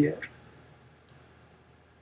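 A single faint, short click about a second in, a pen stylus tapping a drawing tablet as handwriting begins. The tail of a spoken word is heard at the very start.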